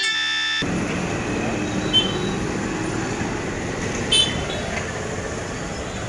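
Street ambience: a steady wash of road traffic noise. A short, high-pitched beep comes about four seconds in, after a fainter one about two seconds in. A snatch of music cuts off at the very start.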